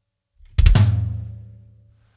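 Bass drum drag played with both feet: a quick cluster of grace strokes into an accented kick about half a second in. Its low boom rings out and fades over about a second and a half.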